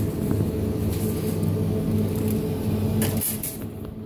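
Steady low mechanical hum of supermarket refrigerated display cabinets, with a brief rustle or knock near the end.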